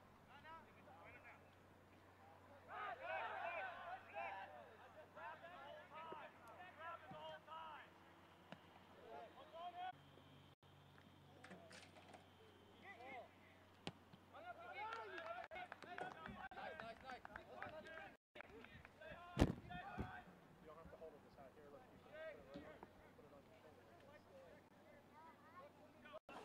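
Faint shouts and calls of players on a soccer field, coming in bursts, with one sharp thump a little after nineteen seconds in.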